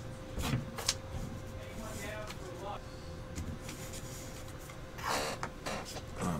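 Desk handling at a computer: two sharp clicks about half a second and a second in, and a short clatter about five seconds in as a hand goes to the keyboard, over a steady faint hum.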